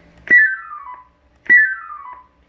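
Stryker SR-955HP CB radio playing its VC-200-style roger beep number 7 on unkeying the microphone: a click, then a quick run of beeps stepping down in pitch. It sounds twice, about a second apart.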